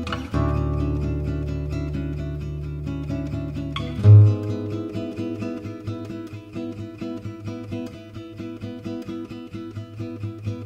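Instrumental acoustic guitar music, plucked and strummed, with one loud low note just after four seconds in.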